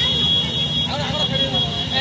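A motorcycle engine idling with a steady low pulse, under a crowd's voices and a steady high-pitched tone.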